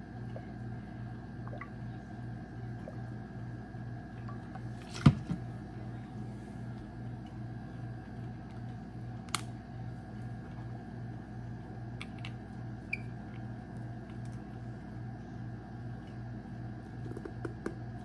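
Steady low hum in the room, with one sharp knock about five seconds in as a plastic squeeze bottle is set down on the countertop, then a few faint clicks of a small glass diffuser bottle being handled.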